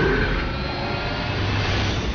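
A loud, steady cinematic rumble: a deep, roaring whoosh of sound design with heavy low end, held at full strength.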